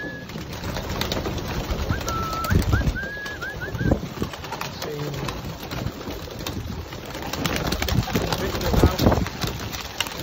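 A flock of yearling racing pigeons crowding a wooden loft: wings flapping in repeated bursts, with cooing and a short run of high thin chirps about two seconds in.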